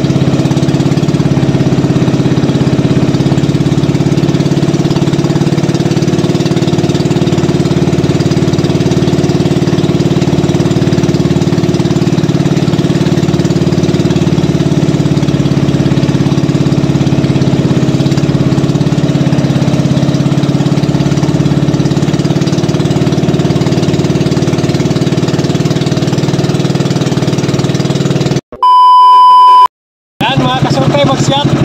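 Motorized outrigger boat's engine running steadily under way. Near the end the engine sound cuts off and a loud electronic beep lasts about a second, followed by a moment of silence.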